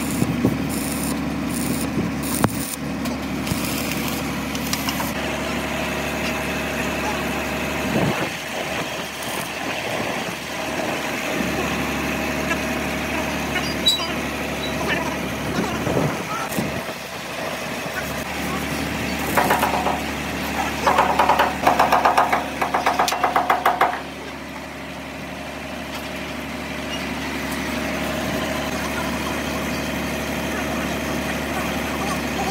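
An engine idling steadily throughout, with the crackle and hiss of a stick-welding arc on steel chassis in the first few seconds. A louder stretch of rapid buzzing pulses comes about two-thirds of the way in.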